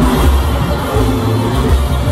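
Loud live regional Mexican band music with accordion and a heavy bass line, heard through a PA from the audience, with no clear singing in this stretch.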